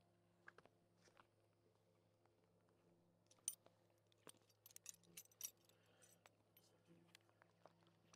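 Faint clinks and jingles of Western saddle cinch hardware being handled, mostly in a cluster of quick clicks from about halfway in, the loudest near the start of it, over a faint steady hum.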